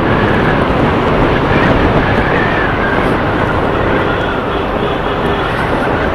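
Steady riding noise from a Yamaha R15M motorcycle under way: a constant rush of wind and engine with no change in level, picked up by a mic inside the rider's helmet.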